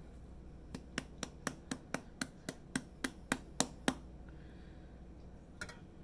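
A quick, even run of about a dozen sharp clicks or taps, roughly four a second, starting just under a second in and stopping about four seconds in.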